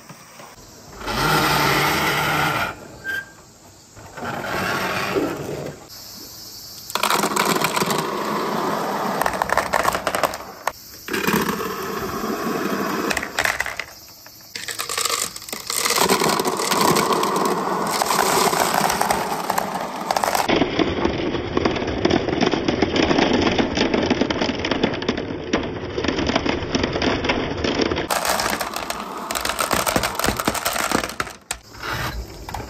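Many marbles rolling and clattering down a wooden marble-run track in a dense rattle of clicks. It comes in several runs with short breaks at first, then goes on almost without pause.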